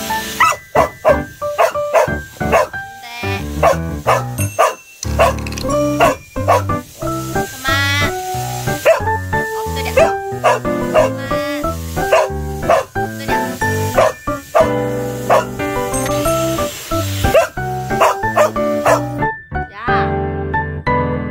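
Border collie barking repeatedly in short sharp barks over background music, protesting at a hair dryer it dislikes.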